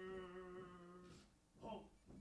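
A faint man's voice calling a drawn-out drill command: one held, unchanging note of over a second that begins with a downward slide, then a short second call near the end.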